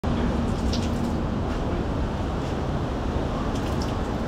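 A steady low rumble of outdoor background noise with a couple of faint clicks.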